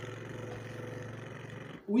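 A man's tongue trill, a rolled 'rrr', held on one steady low pitch as a vocal warm-up exercise; it stops near the end.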